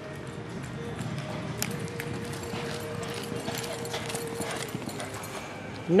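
A horse galloping on the soft dirt of an indoor arena during a barrel racing run: hoofbeats under a steady background noise.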